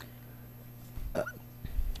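A pause in speech over a steady low electrical hum, broken about a second in by a short hesitant 'uh' from a man at the microphone, with a soft low bump near the end.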